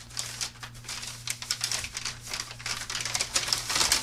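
Crinkling and rustling of a USPS Priority Mail envelope being unfolded and pulled open by hand: a run of irregular crackles, with a faint steady low hum underneath.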